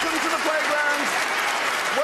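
Studio audience applauding, with voices heard over the clapping.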